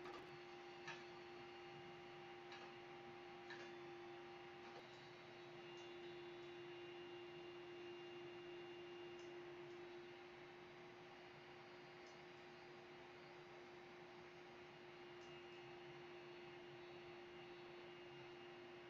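Near silence: room tone with a faint steady hum and a few faint clicks in the first few seconds.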